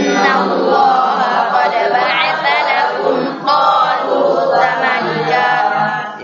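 A group of voices chanting Quranic verses together in unison, in a drawn-out melodic recitation, with a short break about three and a half seconds in.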